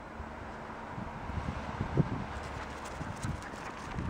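Steps crunching and thudding through deep snow, a run of soft thuds with the loudest about halfway through, then sharper, crisper crunches toward the end.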